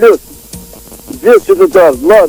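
A person's voice, loud and distorted with a hiss over it: one syllable at the start, a pause of about a second, then a quick run of syllables through the last second.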